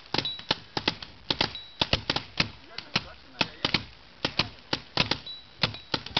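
Several paintball markers firing in a quick, irregular string of sharp pops, about four shots a second overall as more than one shooter fires at once.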